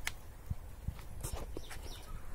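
A rabbit's paws tapping and scrabbling on wooden planks as it shifts about: one sharp click at the start, then several fainter, irregular taps.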